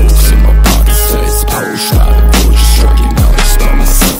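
Loud underground hip-hop beat: deep 808 bass hits that drop in pitch as each one starts, hard drum hits and dense synth layers.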